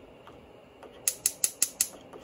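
Gas stove's spark igniter clicking rapidly, about five clicks a second, starting about a second in while the burner has not yet caught.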